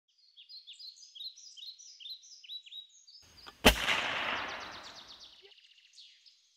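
Birdsong of quick downslurred chirps, about four a second. A little past halfway a single loud gunshot goes off, and its echo fades over about a second and a half while the birds keep singing.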